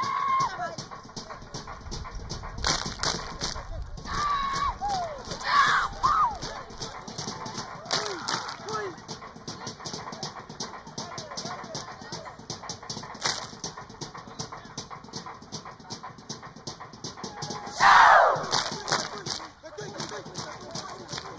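Seated group dancers in a Samoan siva keeping a fast, steady beat of claps and slaps, with short shouted calls that fall in pitch. About two seconds before the end comes one loud, long falling shout.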